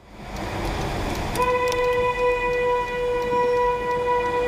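Car horn held in one long steady honk of about three seconds, starting a little over a second in, over the noise of slow traffic. It is blown at a driver who pushes in from the bus lane and takes right of way at a roundabout.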